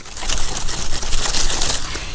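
Hand saw rasping through the soft, wet, fibrous core of a banana pseudostem stump in quick, uneven strokes.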